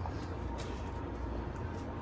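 Faint steady low hum of kitchen background noise, with a couple of faint light clicks.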